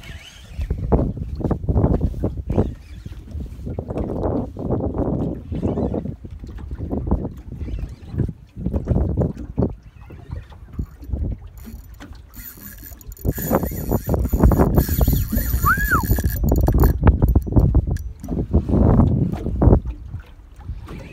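Wind buffeting the microphone and water slapping against a small boat's hull, coming in gusts. For about four seconds past the middle, a faint high, steady whine runs underneath.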